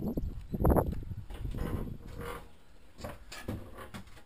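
Bumps and handling noise as someone steps into a plastic portable toilet cabin: two heavy knocks in the first second, then quieter movement with a few short clicks near the end.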